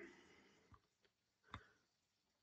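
Near silence with two faint, short clicks, about three-quarters of a second and a second and a half in: computer mouse clicks.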